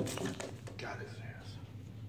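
A ball python striking and seizing a rat on newspaper: the thud of the strike fades into a crackle and rustle of paper. This is followed by a breathy, whispered human exclamation that lasts about a second and a half.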